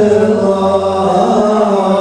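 Male vocal group singing an unaccompanied Islamic devotional chant (ilahija) into microphones, the voices holding long, slowly moving notes together.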